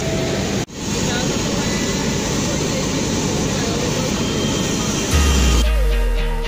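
Steady roar of jet aircraft noise with voices faint in the background, broken off for an instant by an edit about half a second in. About five seconds in, a deep bass note starts, and music with plucked guitar begins just before the end.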